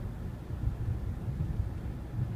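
A car driving, heard from inside the cabin: a steady low road and engine rumble.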